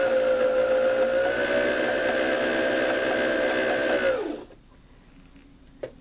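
Janome Emerald 116 sewing machine's motor running with the foot pedal pressed, driving the bobbin winder to wind thread onto a bobbin: a steady whine that rises slightly in pitch, then stops about four seconds in.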